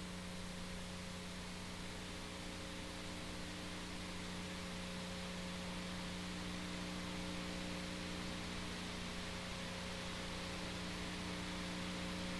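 Steady electrical hum under a constant hiss, with nothing else happening: the background noise of a silent stretch of old footage.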